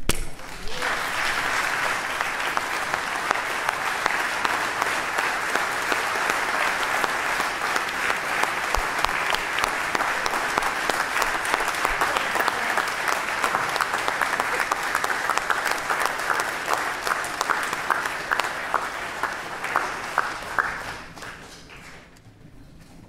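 Crowd applause: many people clapping steadily for about twenty seconds, thinning into a few separate claps near the end before it stops.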